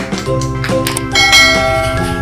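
Children's background music, with a bell-like chime starting about a second in and ringing on over it.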